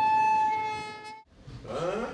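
Train horn held on one long steady note, joined by a second tone about half a second in, fading out just past a second. Faint voices follow near the end.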